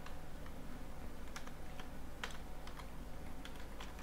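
Computer keyboard being typed on slowly: a handful of separate, unevenly spaced keystrokes over a faint steady low hum.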